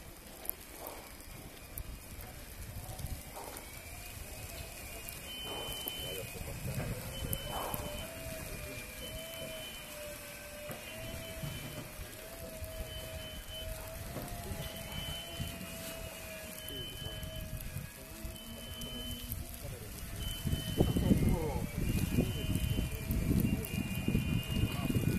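Lely Vector automatic feeding robot driving over snow. A steady wavering whine runs under a short high beep that repeats about every two seconds. A louder low rumble comes in over the last few seconds as the robot draws close.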